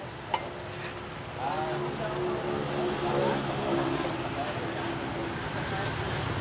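A steel ladle clinks once, sharply, against a large stockpot of broth a moment in. Steady street traffic and faint voices carry on underneath.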